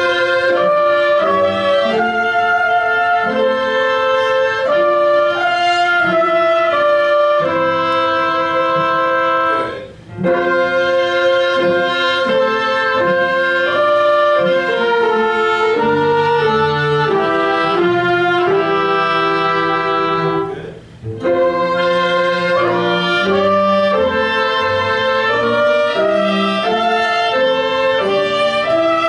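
A small mixed ensemble of strings and winds playing the soprano and alto lines of a four-part tune together in sustained notes. The playing breaks off briefly at a phrase end about ten seconds in and again about twenty-one seconds in.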